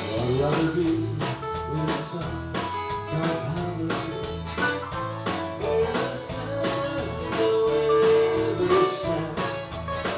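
Live band playing: guitars over a drum kit keeping a steady beat.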